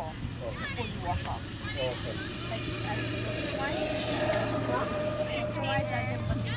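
A motor vehicle engine running with a steady hum, swelling about four seconds in, with faint voices in the first couple of seconds.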